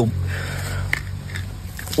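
A flat wooden stick scraping and digging into hard soil, with a couple of small clicks of grit about a second in and near the end.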